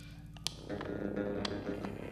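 Live progressive rock band playing a quiet, sparse passage. A held chord fades out, there is a sharp tap about half a second in, and then plucked notes and a few light percussive strikes come back in.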